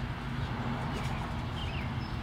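A steady low hum, with a couple of faint high bird chirps near the end.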